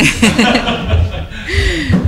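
A woman and a man laughing heartily together, in uneven breathy bursts.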